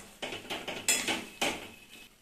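Steel spatula scraping and knocking against a metal kadai while stirring a thick potato mixture. There are about six strokes, the loudest about a second in, and they stop shortly before the end.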